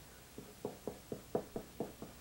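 Pencil drawing quick hatching strokes on paper: about seven short, even strokes, roughly four a second.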